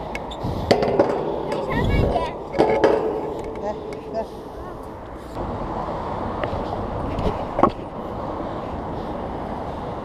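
Clatter and a few knocks in the first seconds, then a stunt scooter's wheels rolling steadily on smooth concrete, with one sharp knock about three-quarters of the way through.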